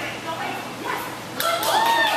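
Cardigan Welsh corgi barking: a quick string of sharp barks starting about one and a half seconds in.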